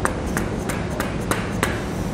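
Soft-faced mallet tapping a metal dust cap into a trailer hub: about five short strikes roughly a third of a second apart, working around the cap's rim to seat it squarely.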